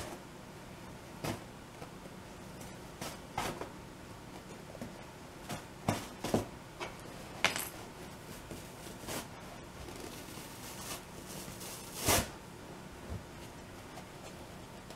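Hands handling yellow foam cushion pieces at a metal-framed chair: scattered short rustles and knocks, the loudest about twelve seconds in.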